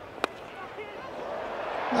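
A single sharp crack of a cricket bat striking the ball about a quarter of a second in, followed by low stadium crowd noise that slowly swells.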